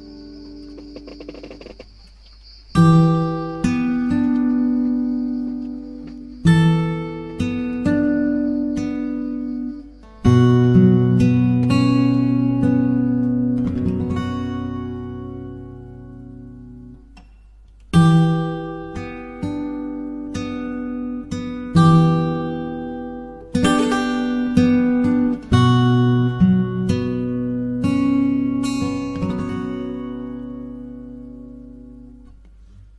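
Acoustic guitar music: chords strummed one after another, each ringing out and fading, with brief pauses about two seconds in and past the halfway point.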